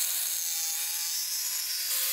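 Electric jigsaw cutting through a plywood board, running at a steady pace: a hissing blade noise with a faint steady motor whine underneath.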